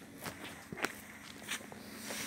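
Footsteps of someone walking, a few separate steps over a faint low steady hum.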